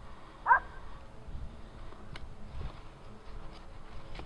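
Knife tip prying and scoring into a wooden try stick, with a few faint clicks of the blade in the wood. A short, loud, sweeping squeak comes about half a second in.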